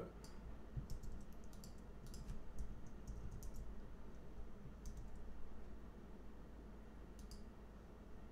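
Scattered computer mouse and keyboard clicks in small clusters, as a line of code is selected, copied and pasted, over a low steady hum.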